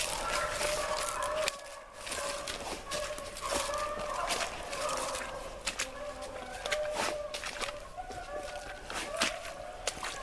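A pack of rabbit hounds baying in full chase, several dogs' drawn-out cries overlapping one another, with sharp crackles of dry brush and twigs close by.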